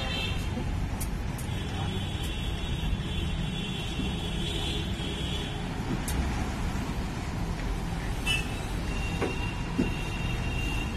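Steady low rumble of road traffic. A high-pitched tone sounds for about four seconds starting about a second and a half in, and a few sharp clicks come through it.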